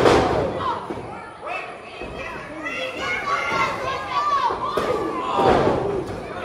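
A wrestler's body hitting the wrestling ring mat: one loud thud right at the start that echoes around the hall, followed by crowd shouts and chatter, which swell into louder shouting near the end.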